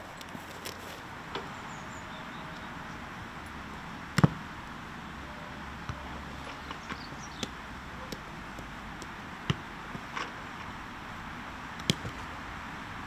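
A football being struck: a handful of sharp knocks as a player kicks and chests it. The loudest comes about four seconds in, and others come near the end, over a steady background hiss.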